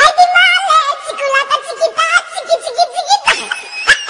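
High-pitched human laughter: a giggle that starts abruptly, wavers quickly up and down in pitch and breaks into rapid short bursts, going higher a little past three seconds in.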